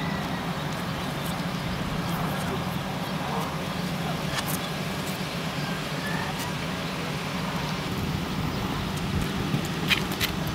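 Steady low hum of a stretch limousine's engine idling, with faint voices and a few sharp clicks near the end.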